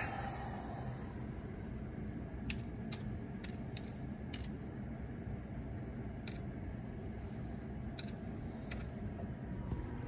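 About eight separate computer keyboard keystrokes, spaced irregularly, as a Windows login password is typed in. Under them runs a steady low hum.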